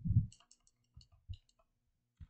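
Computer keyboard keystrokes: a scatter of sharp clicks spread over about a second and a half as code is typed and deleted. They follow a short low thump at the very start.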